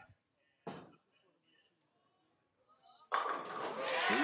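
A bowling ball laid down on the wooden lane with a short thud under a second in, then a sudden loud crash of pins being struck about three seconds in.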